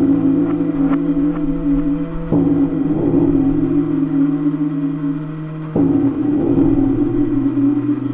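Ambient balearic electronic music: sustained synth chords held for a few seconds each, shifting to a new chord twice, with a few light ticks in the first two seconds.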